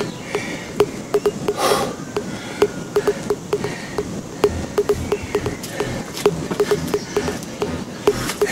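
A man breathing hard during a set of squats and push-ups, with one loud breath about two seconds in, over a run of short low pips and sharp clicks.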